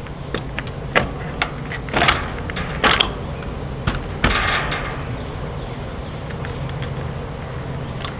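Sharp clicks and clinks of a steel washer and bolt as a hard plastic wheel is worked onto a bolt through a wooden frame, with a brief scrape of the hub sliding on just after the middle. A steady low hum runs underneath.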